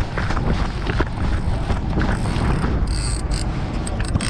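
Wind rumbling on a moving camera's microphone, with handling noise, as it is carried at a run along a pier.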